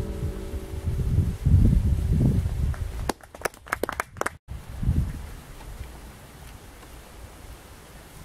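Wind buffeting the microphone outdoors in low rumbling gusts, loudest in the first few seconds, as the last acoustic guitar notes die away at the start. A quick run of sharp clicks comes about three to four seconds in, cut off by a brief dropout.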